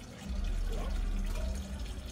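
Water running steadily into a small fish pond, trickling, over a steady low hum.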